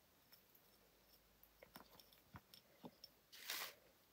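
Near silence with a few faint small clicks, then a brief soft brushing sound near the end, as glass jars are handled and set down on a craft mat.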